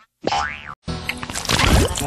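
Cartoon sound effects over music: a boing-like tone glides up and falls back just after a short drop-out at the start, then a dense run of effects and music follows.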